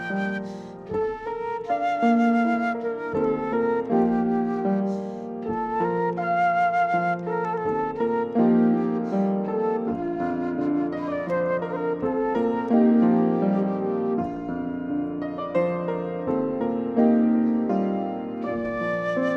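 Concert flute playing a slow melody, some notes held with vibrato, over a lower accompaniment.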